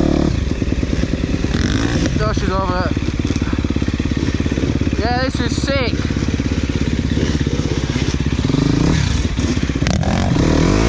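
Husqvarna enduro dirt bike engine running under throttle on a muddy track, with the revs rising and falling near the end. A voice sounds briefly, around two and around five seconds in.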